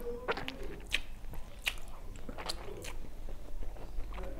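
Close-miked eating sounds: chewing with wet mouth clicks and smacks, a few sharp crackles at irregular intervals.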